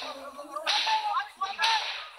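Two short whooshing swishes about a second apart, a TV news graphic's transition sound effect.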